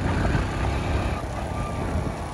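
Steady noise of a vehicle moving along a road, engine and road noise with no distinct events.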